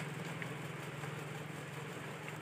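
A steady low hum, with a small click at the very start and a faint tick about half a second in.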